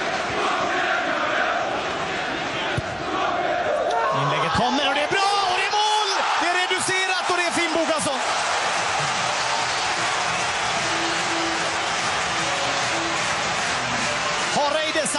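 Football stadium crowd noise: a steady mass of supporters' voices, with shouting or chanting rising out of it for a few seconds around the middle.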